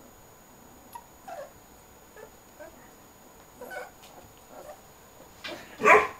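Two-week-old borzoi puppies whimpering and squeaking in short, faint calls, with a louder cry just before the end.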